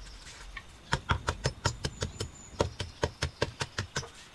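Quick, sharp strokes of a small hand blade against a cork branch, about six a second, starting about a second in after a short pause: bark being chopped and stripped from the end of the branch.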